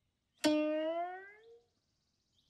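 A short musical sting: a single plucked note, struck about half a second in, that slides upward in pitch as it dies away over about a second.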